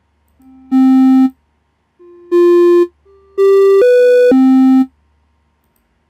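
Buzzy synthesized note previews from the micro:bit MakeCode melody editor as notes are placed on its grid. There are two single notes about a second and a half apart, then a quick run of three that steps up twice and drops back to a low note.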